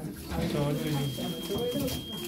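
A man's low voice murmuring or humming without clear words.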